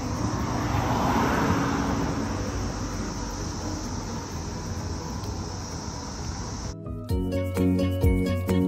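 Outdoor ambience: a steady high-pitched insect drone over a low rumble of distant traffic, which swells like a vehicle passing about a second in. About seven seconds in, it cuts suddenly to light background music with a jingly tune.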